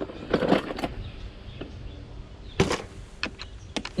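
A few light clicks and knocks from handling a screwdriver against the hard plastic body of a Henry vacuum cleaner during teardown. The sharpest knock comes a little past halfway.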